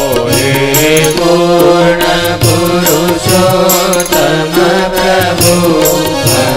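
Hindu devotional song (bhajan) sung by a voice over instrumental accompaniment, with a sustained low drone and steady rhythmic percussion strikes.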